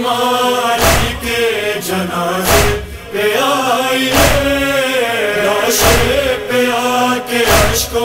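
Wordless vocal chanting of a noha lament melody, held and wavering between sung verses, over a deep thump that comes roughly every one and a half to two seconds.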